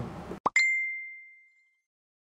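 Edited-in end-screen sound effect: a quick upward swish, then a single bell-like ding that rings out and fades away within about a second.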